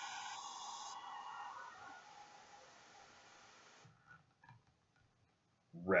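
Airbrush spraying red ink: a steady hiss of air and paint that is loudest at first, fades, and cuts off sharply about four seconds in.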